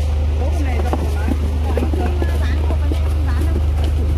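Steady low rumble of an idling vehicle engine, with voices in the background.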